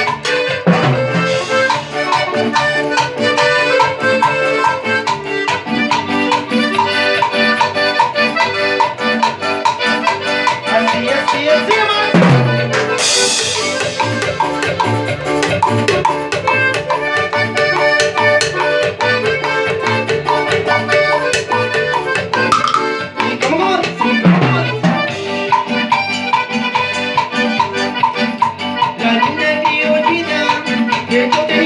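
A live cumbia band plays an instrumental passage: a piano accordion carries the melody over a steady beat of drums and hand percussion. A cymbal crash comes near the middle.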